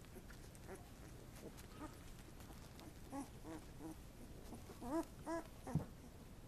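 Eighteen-day-old Labrador Retriever puppies whimpering: a run of short squeaky cries, each rising and falling in pitch, starting about halfway through, with the two loudest near the end, followed by a brief soft bump.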